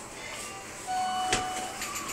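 Elevator arrival chime from the hall lantern: a short electronic tone lasting under a second, starting about a second in, with a sharp click partway through.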